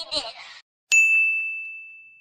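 A brief snatch of voice, then about a second in a single bright ding sound effect that rings on one high tone and fades away over about a second and a half.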